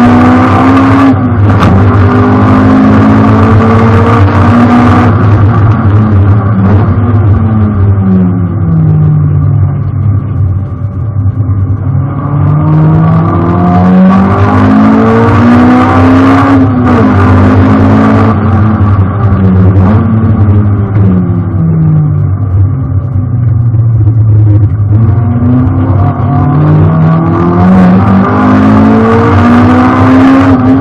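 Honda Integra Type R (DC2)'s four-cylinder B18C engine heard from inside the cabin on a hard circuit lap. The revs climb under full acceleration, sink as the car slows for corners and climb again, about three times over.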